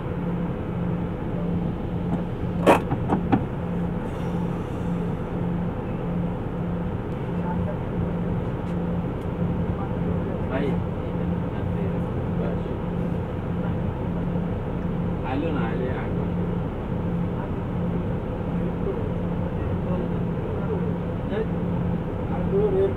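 Vehicle engine idling, heard from inside the cab: a steady low hum with a slight regular pulse about twice a second. A single sharp click comes about three seconds in.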